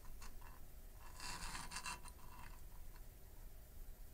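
Faint handling sounds: two light clicks, then a short scraping rub about a second in, as a small printed circuit board is pushed across the desk surface and repositioned.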